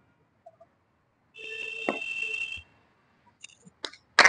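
About a second and a half in, a steady hissing tone with a few held pitches lasts a little over a second. Near the end comes a sharp single crack of a cricket bat striking the ball.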